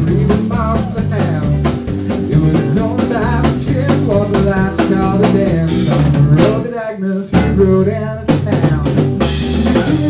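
Live rock band playing an instrumental passage on electric guitars, electric bass and a Tama drum kit, with a lead line of wavering, bending notes over a steady beat. About six seconds in a cymbal crashes, and the band breaks off briefly about a second later before coming back in.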